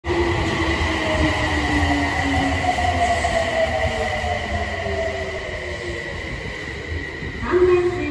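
Subway train on the Toei Mita Line running at the platform: a low rumble with a motor whine that slowly falls in pitch, over a steady high tone. A brief new sound comes in near the end.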